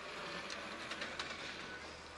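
Footsteps and camera-handling noise from someone walking with a handheld camera: a few light knocks over a steady hiss and a low hum.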